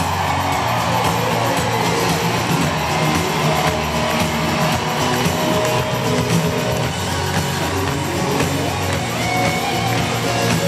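A live pop-rock band playing loudly and steadily, with bass guitar and drums, heard from the audience in a concert arena.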